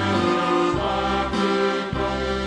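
Traditional Montenegrin folk dance music: held notes changing about every half second over a low bass that comes and goes.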